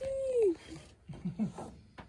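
Golden retriever giving one drawn-out whine that holds and then falls in pitch over about half a second, then a few short, faint, low groans, while lying on its back having its belly rubbed.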